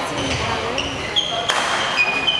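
Athletic shoe soles squeaking on a sports-hall court floor: several short squeaks, with one sharp knock about a second and a half in, over background voices in a large hall.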